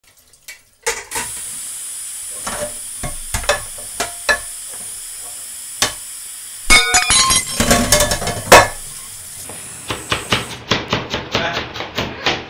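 Kitchen sounds: a steady hiss with scattered clinks and a loud burst of clattering about two-thirds of the way through. Near the end comes a kitchen knife chopping carrots on a cutting board in quick knocks, about three a second.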